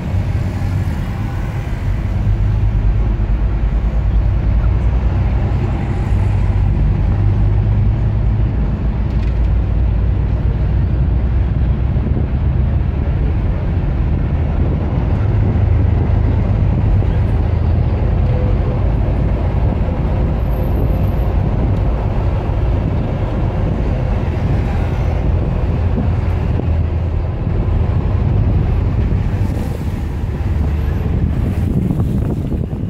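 Steady low rumble of a sightseeing bus driving through city traffic, heard from its upper deck, with passing road traffic mixed in.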